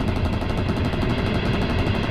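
Machine-gun fire in one long, rapid, evenly spaced burst over the steady low rumble of a running train.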